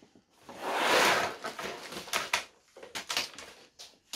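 Dozens of small plastic bags of Lego parts sliding out of a tipped cardboard box and landing in a pile on a table. A rustling slide about half a second in, then a scatter of light clatters and crinkles as the bags settle.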